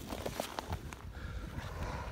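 Footsteps of rubber boots with ice cleats scuffing and crunching on snow-covered lake ice: a few irregular short clicks and scrapes over a low rumble.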